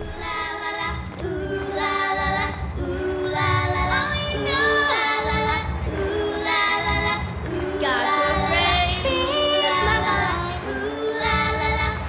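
Children's voices singing an upbeat show tune over a band with a steady beat, phrase after phrase.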